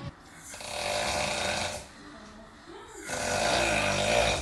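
A sleeping man snoring: two long snores, each about a second and a half, with a short pause between them.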